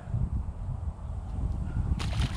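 Low, uneven rumble of wind buffeting a phone's microphone, with some handling noise.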